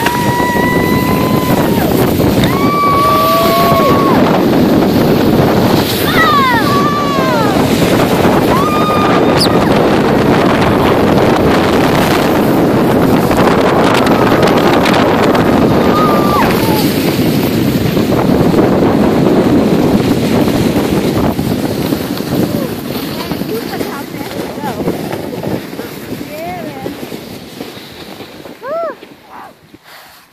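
Snow tubes sliding fast down a snow slope: a loud, steady rush of the tubes running over the snow, mixed with wind on the microphone, with riders' squeals and shouts over it. The rush dies away over the last few seconds as the tubes slow to a stop.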